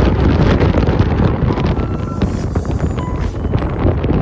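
Loud, steady wind buffeting the microphone: a heavy, ragged rush, strongest in the low end.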